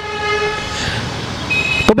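A vehicle horn sounding one steady note that fades out after about a second, followed near the end by a brief high steady tone.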